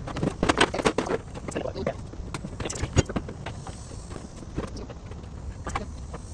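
Sheet-metal auxiliary heater box knocking, clattering and scraping as it is wiggled and pried loose from its floor mount. The knocks come thick in the first second, with the sharpest one about three seconds in.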